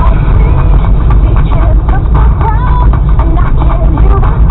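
Steady low rumble of a vehicle's engine and road noise heard inside the cabin, with a voice from the car radio over it.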